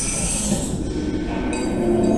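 Sound effect of a logo animation played over a hall's speakers: a hissy whoosh swells up and fades, then sustained ringing chime tones come in about a second and a half in.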